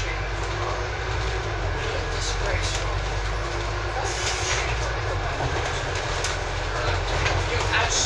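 Scania Enviro 400 double-decker bus on the move, heard from inside on the upper deck: a steady low engine and road rumble with occasional short rattles from the bodywork.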